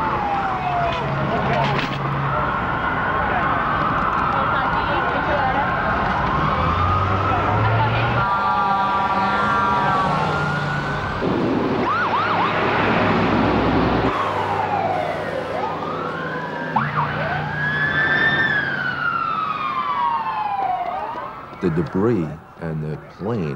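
Several emergency-vehicle sirens sound at once, their rising and falling wails overlapping. About eight seconds in, a steady blast of several tones together is heard for a couple of seconds.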